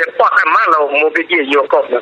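Speech only: a voice talking without pause.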